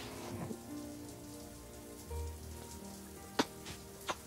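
Soft background score of sustained held notes over a steady, even hissing patter, with one sharp click about three and a half seconds in.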